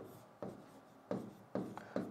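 Stylus writing on an interactive touchscreen display: a few short, faint scratching strokes as a number is written and circled.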